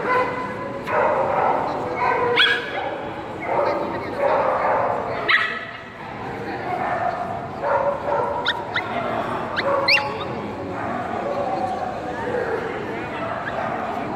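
A dog barking, several short sharp barks a few seconds apart, over a steady background of people's chatter.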